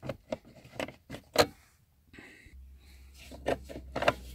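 A BMW F30's cigarette lighter socket being wiggled and pried out of the plastic centre-console trim: a run of sharp clicks and knocks, the loudest about a second and a half in, then quieter rubbing with a low steady hum and a few more clicks as the socket comes free.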